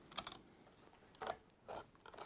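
Three faint, short scratches of a utility knife blade cutting through a cardboard blister card.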